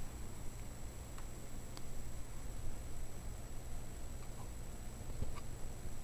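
A few faint, isolated ticks from hands handling a small clear plastic enclosure, over a steady low background hum.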